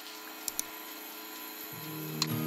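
Induction hob running with a steady electrical hum and fan noise, heating an empty pan, with two light clicks about half a second in. Background music starts to come in near the end.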